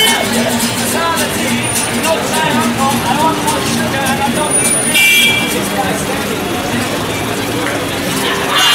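Steel-string acoustic guitar strummed with a man singing, over street traffic noise. A vehicle horn sounds briefly about five seconds in.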